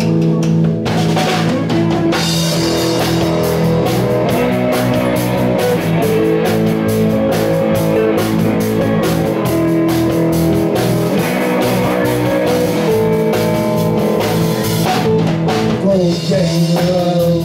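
Live blues band playing an instrumental passage: electric guitars, bass guitar and drum kit, with no vocals. The drums and cymbals fill out about two seconds in.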